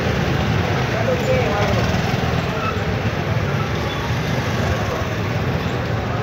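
Small scooter engines running as several motor scooters ride slowly past, over a steady street noise with indistinct voices.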